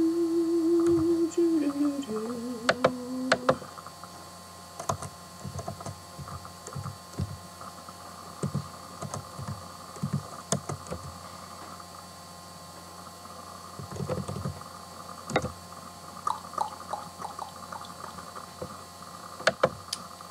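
A woman humming a few held notes, stepping down in pitch, for the first three or four seconds, then scattered light clicks and taps of laptop keys as she types.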